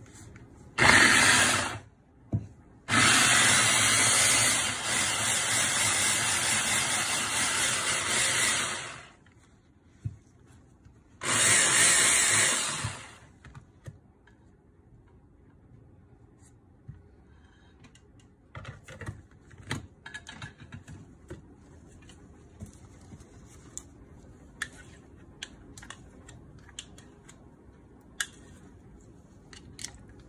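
Red stick blender's motor driving its mini chopper attachment to puree papaya. It runs in three pulses: a short one, a long one of about six seconds and another of about two seconds. Afterwards come scattered light plastic clicks and taps as the motor unit is lifted off and the chopper bowl is opened.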